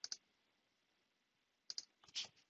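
Computer mouse clicking: a pair of faint clicks at the start and another pair about a second and a half later.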